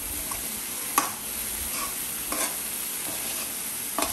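Metal fork stirring chopped greens in an aluminium kadai, with a few sharper scrapes against the pan over a steady sizzle of the vegetables frying.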